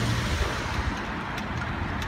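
City road traffic: a car passing close by, its low engine hum fading out just after the start, leaving a steady hiss of traffic.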